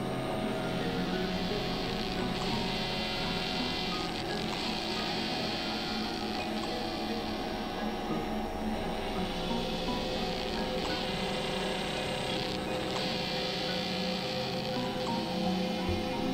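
Experimental electronic drone music: many held synthesizer tones layered over a noisy hiss, the hiss swelling brighter every few seconds.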